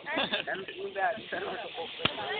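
People talking in the background, with no words clear enough to make out.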